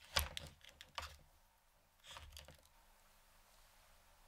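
Fingers handling and sliding through a mannequin head's long synthetic ponytail: a few faint, sharp crackling clicks in the first second, then a brief rustle about two seconds in.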